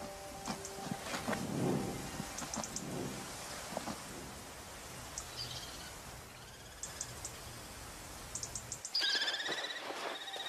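Outdoor ambience: a steady hiss with a few faint, scattered high ticks. About nine seconds in comes a rapid run of high, repeated calls from kestrels.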